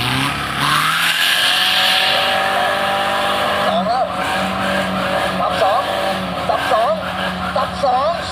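Diesel 4x4 pickup engine revving hard under full load on an off-road hill climb, its pitch rising in the first second and then held at high revs. A voice is heard over the engine in the second half.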